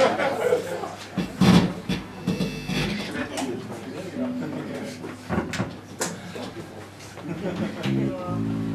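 Voices talking between songs, with scattered knocks and clicks from instruments being handled on stage and a short held instrument note about four seconds in. Right at the end the band starts to play.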